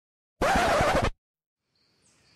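A short, loud sound-effect burst, well under a second long, starting about half a second in.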